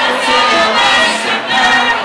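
A live merengue band playing, with several voices singing together over the band.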